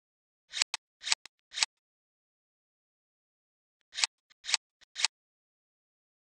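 A repeating slide sound effect: short swishing, ticking bursts that swell and cut off sharply, three in quick succession about half a second apart, then three more a few seconds later.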